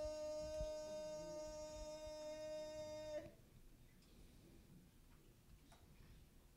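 A single sustained musical note with many overtones holds at a steady pitch, then cuts off suddenly about three seconds in. Faint room tone with a few small ticks follows.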